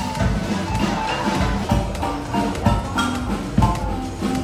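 Live marimba band playing, several players striking quick runs of short wooden notes over a low bass line.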